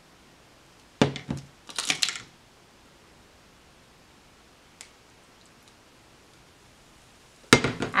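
A utensil knocks against a bowl about a second in, followed by a short scraping stir through clay mask paste mixed with apple cider vinegar. A faint click comes near the five-second mark, and a sharp knock just before the end.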